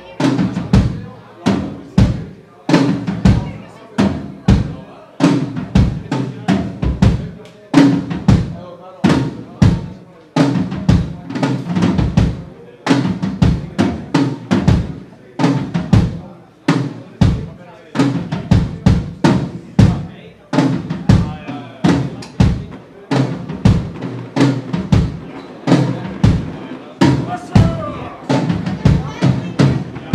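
Live band playing: a drum kit keeps a steady, fast beat of bass drum and snare hits, under bass guitar, baritone saxophone and clarinet.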